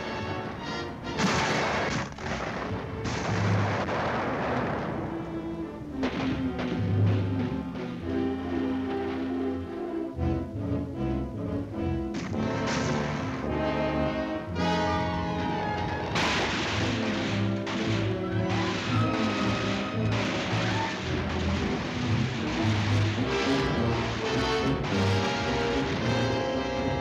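Background music throughout, overlaid by several booms of simulated artillery blasts and gunfire. The heaviest blasts come in the first few seconds and again about sixteen seconds in.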